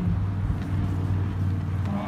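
Motorcycle engine running steadily at low speed, a low even rumble, with people talking over it.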